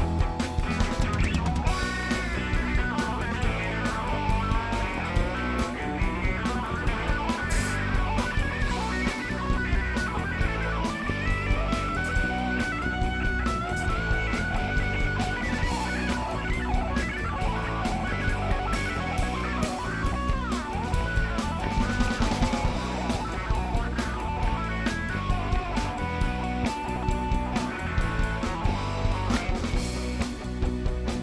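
Live rock band playing an instrumental stretch: a lead electric guitar plays held notes and a bend over a steady drum kit.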